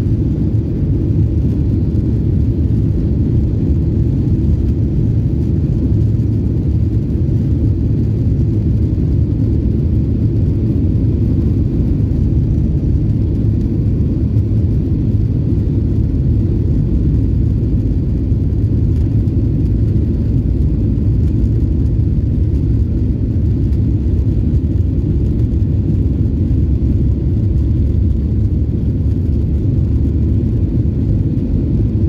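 Jet airliner cabin noise heard from a window seat over the wing: a loud, steady low rumble as the plane rolls along the ground.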